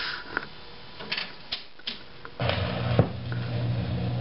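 1962 Rock-Ola jukebox's record-changing mechanism clicking and clattering as the magazine turns and a record is carried to the turntable. About two and a half seconds in, a steady low hum starts, with a single knock half a second later, as the record begins to play.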